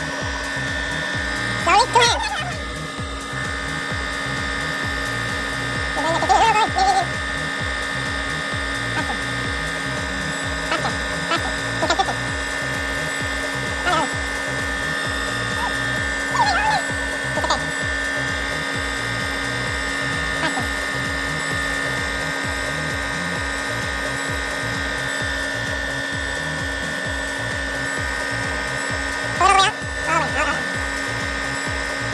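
Small benchtop metal lathe running steadily, giving a constant hum with a higher whine while a workpiece is turned in the chuck. A few brief louder sounds break in over it.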